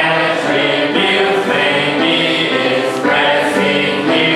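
A hymn being sung in long held notes, led by a man singing into a handheld microphone, with what sounds like a group of voices singing along.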